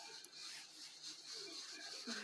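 Faint rubbing and rustling of cotton yarn drawn through the fingers and worked onto a crochet hook.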